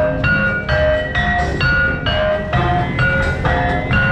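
Javanese gamelan music of the kind played for jathilan dancing: bronze metallophones struck in a steady beat of about two notes a second, each note ringing on, over continuous low drumming.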